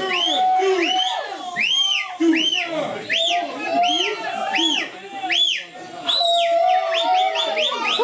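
Hand-cranked sugar cane press squeaking as it is turned to crush a cane, a high rising-and-falling squeal about twice a second that comes quicker near the end.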